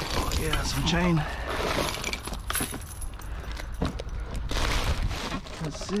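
Clattering and clinking of plastic, metal and cardboard junk being shifted and rummaged through by gloved hands, a string of short knocks and rattles.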